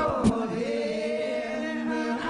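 Layered, looped vocal harmonies held as sustained choir-like chords, with a sung line sliding over them and a couple of short percussive hits.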